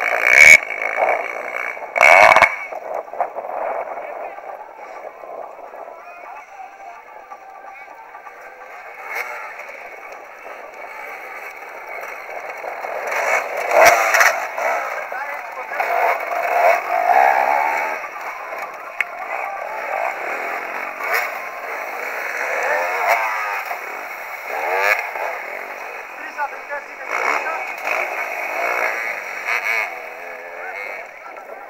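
Enduro dirt bike engines revving up and down as riders work through the course obstacles, growing louder about halfway through. Two sharp knocks come in the first couple of seconds.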